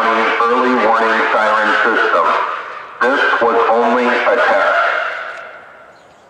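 Whelen WPS-3016 outdoor warning siren's loudspeaker array broadcasting a recorded male voice announcement that concludes the county siren test. The voice is loud and radio-like. It pauses briefly about two and a half seconds in, resumes, and trails off with a fading echo just before the end.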